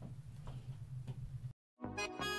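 A steady low hum with three soft ticks about half a second apart. About one and a half seconds in, the sound cuts to dead silence for a moment, and background music with a steady beat starts near the end.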